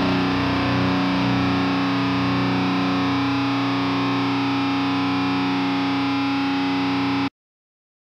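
A heavily distorted final chord on an Ibanez RGA121 electric guitar, left to ring at a steady, undecaying level, then cut off abruptly about seven seconds in.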